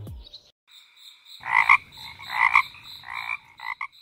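Frogs croaking: four or five loud croaks, roughly a second apart, over a steady high-pitched chorus.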